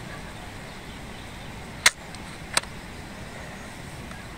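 Steady outdoor background noise, broken by two sharp clicks a little under a second apart about two seconds in.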